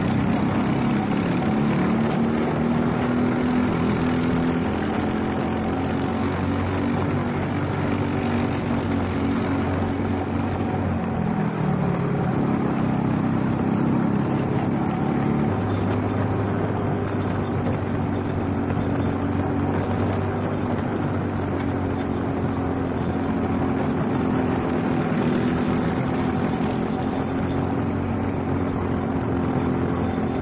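Onboard sound of a Briggs & Stratton LO206 kart's single-cylinder four-stroke engine running hard at racing speed. The revs dip about twelve seconds in and climb back up a few seconds later.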